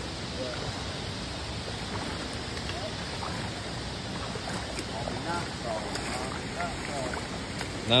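Shallow rocky mountain creek running over stones, a steady rush of water. Faint short voice-like sounds come through it a few times in the middle.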